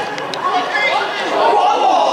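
Men's voices shouting and calling out across a football pitch during open play, indistinct, with a short knock about a third of a second in.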